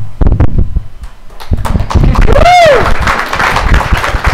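A handheld microphone bumping and rubbing as it is passed hand to hand, then audience applause with one whoop rising and falling about two and a half seconds in.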